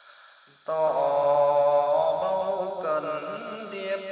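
A singing voice comes in loudly after a brief hush, about two-thirds of a second in, holding long notes with vibrato over a steady low accompaniment: a Vietnamese song.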